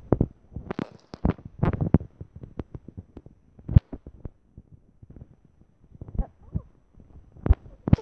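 Irregular knocks, thumps and rustles from a handheld phone being moved about and handled, the sharpest knock a little before four seconds in.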